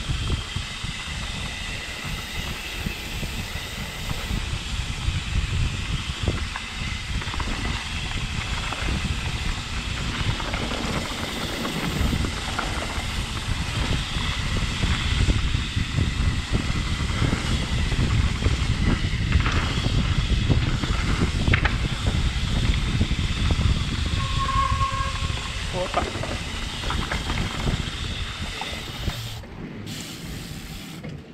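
Wind buffeting the microphone of a bike-mounted camera, with mountain bike tyres rolling and the bike rattling over a dirt trail on a descent. A brief high squeal comes about 24 seconds in.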